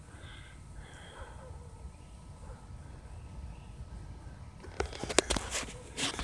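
Low steady background rumble, then a quick cluster of sharp clicks and rustles about five seconds in: handling noise from the recording phone or camera as it is moved.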